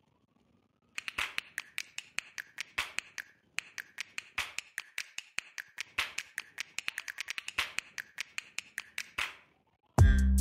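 A rapid, uneven run of sharp typewriter-like keystroke clicks, several a second with brief pauses, stopping a little after nine seconds in: a typing sound effect added to on-screen text as it is typed out.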